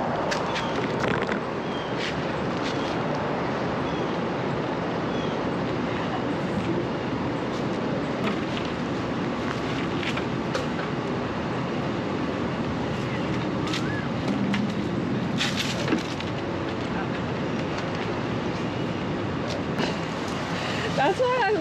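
A wooden bookshelf being handled out of a metal dumpster: scattered knocks and bumps, a cluster of them near the end, over a steady outdoor background noise.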